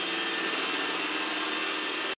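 Robot vacuum cleaner running, a steady, loud whir with a high whine over it.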